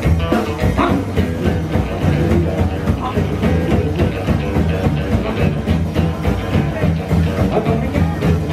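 Live rockabilly band playing an instrumental passage with a steady beat: upright bass, strummed acoustic guitar, electric guitar and drums.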